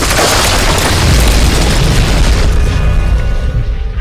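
A loud boom and rumbling crash sound effect over music, with the music's notes coming through more clearly in the second half as the rumble eases.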